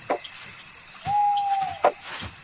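An owl hooting once: a single held note lasting under a second, dipping slightly as it ends, with a brief sharp click just after it.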